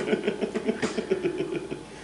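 Adults laughing, a rapid run of voiced pulses that trails off and dies away within about two seconds, with a single sharp click partway through.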